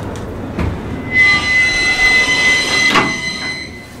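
Century-old TITAN rope-operated traction freight elevator giving a loud, weird, high-pitched squeal for about two and a half seconds, starting about a second in, with a knock shortly before it and a clunk near its end.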